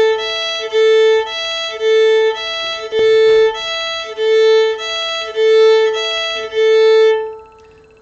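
A fiddle rocks steadily between the open A and E strings in a string-crossing exercise, about one note every half second, with the A notes louder. The playing stops about a second before the end.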